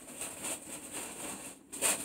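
Packet of bicarbonate of soda rustling as it is handled, with a short sharper crinkle near the end.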